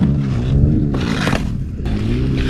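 An engine running, its pitch rising and falling gently.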